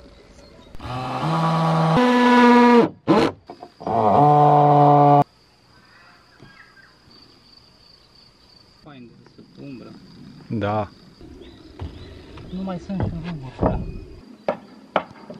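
A man's loud, drawn-out shouts: a first long call held on one note and then jumping higher, and after a short break a second long call on a steady note.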